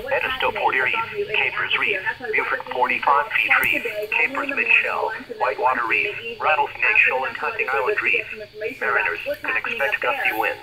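Weather radio broadcast: a voice reading a National Weather Service marine warning over a small, narrow-sounding radio speaker.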